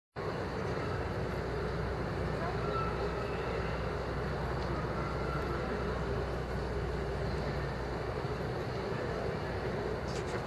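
Busy city street ambience: the murmur of a large crowd talking over a steady low rumble.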